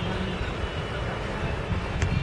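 Steady outdoor background noise: a low, unsteady rumble with an even hiss over it.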